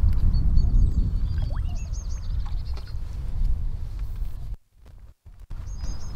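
Low rumble of wind and handling on the microphone, heaviest in the first two seconds, with small birds chirping high over it. The sound cuts out briefly near the end.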